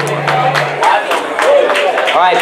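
Last chord of an amplified acoustic-electric guitar ringing out and stopping about a second in, followed by a few scattered claps and voices.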